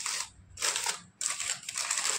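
A paper burger wrapper crinkling and rustling as it is unfolded by hand. The crinkling comes in three bursts, with short pauses between them.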